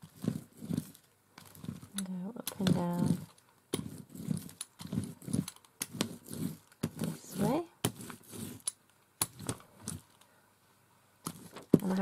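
Small hand brayer rolled through wet peach acrylic paint on a palette and over fabric, with many short scattered clicks. A woman's voice sounds briefly twice without clear words, rising in pitch the second time.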